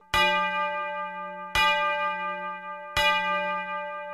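A bell struck three times, about a second and a half apart, each strike ringing on and fading before the next.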